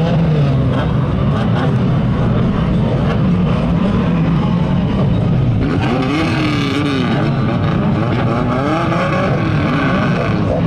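A pack of banger racing cars' engines running together on a rolling lap, a dense mix of engine notes. From about six seconds in a nearer engine revs up and down over a louder rasp.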